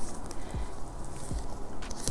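Quiet handling of a stack of paper banknotes and the clear plastic pouch of a cash binder: a soft rustle with a few faint taps.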